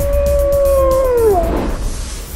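A wolf howl sound effect in a logo sting: one long howl held at a steady pitch that drops away about a second and a half in, over a low rumbling music bed.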